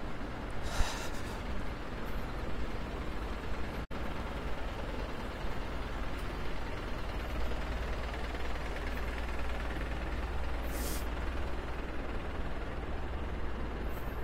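Steady city-street traffic noise with a low rumble. Two short hisses stand out, one about a second in and one about eleven seconds in, and the sound cuts out for an instant about four seconds in.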